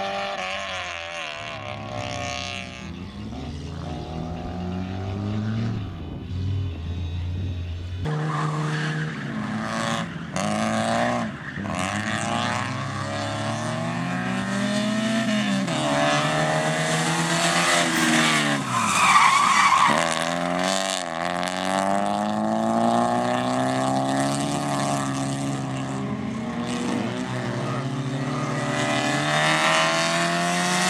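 Rally-prepared Toyota Corolla hatchback's engine revving hard and dropping back again and again as it is driven through tight turns, the pitch climbing through each gear and falling on the lift. Tyres squeal briefly about two-thirds of the way through.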